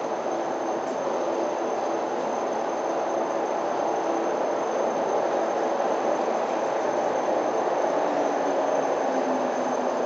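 A public lift car travelling through its shaft: a steady running rumble with a faint hum whose pitch drops slightly near the end.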